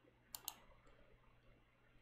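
Two quick computer mouse clicks about a third of a second into otherwise near silence.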